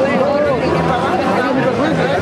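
Several people talking at once close by, overlapping voices in steady chatter.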